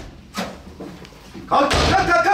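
Hard bangs on a hotel-room door: one right at the start, another about half a second in, then a louder, longer crash near the end as the door is burst open.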